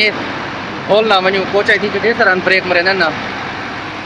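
Steady hum of a large coach bus standing close by with its engine running, with a man talking over it for a couple of seconds in the middle.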